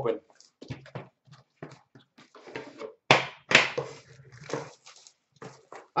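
Plastic wrapping torn open by hand: a run of short irregular crinkling rips, loudest about three seconds in.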